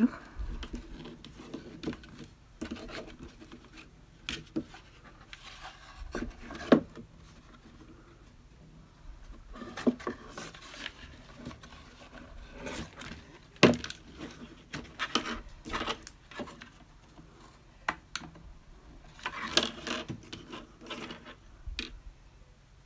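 Handling noise from a cardboard sign with a wire hanger being moved about on a worktable: scattered taps, clicks and rubbing, with a few sharper knocks.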